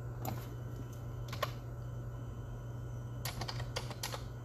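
Scattered light clicks, like keystrokes or taps on a device, a few near the start, one about a second and a half in, and a quick run of them near the end, over a steady low hum.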